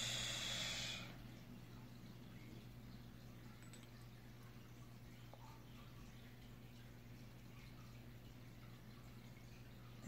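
An acrylic nail brush swished in a glass dappen dish of liquid monomer gives a short hiss lasting about a second, then near silence with a low steady hum.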